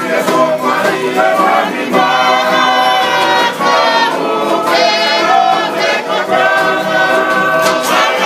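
A group of voices singing a Tongan song in harmony with long held notes, the music for a group dance. A sharp hit cuts through near the end.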